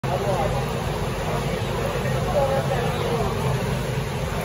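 People talking over a steady low rumble of motors.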